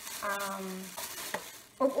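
Thin plastic bag rustling and crinkling, with a couple of sharper crackles, as a folded garment is pulled out of it. A woman hums a short 'mmm' early on and says 'um' near the end.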